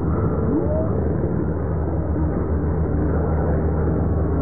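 A low-flying aircraft's engines droning steadily.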